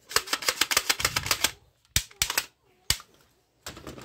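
Plastic toy rifle's trigger mechanism clicking: a fast run of sharp clicks for about a second and a half, then a few single clicks.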